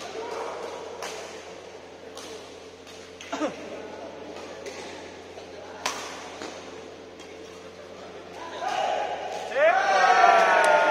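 Badminton rackets striking a shuttlecock in a doubles rally, sharp hits every second or two, echoing in a large hall, with voices in the background. Near the end a louder pitched squeal with gliding tones rises over the play.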